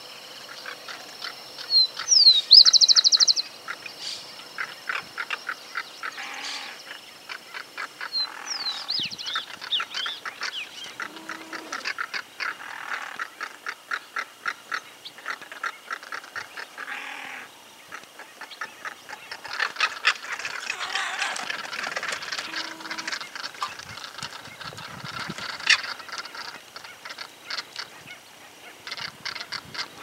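Southern crested caracaras calling in harsh, rapid rattling series, on and off, as they squabble and fight among themselves. A loud, high trill from a smaller bird cuts in about two seconds in.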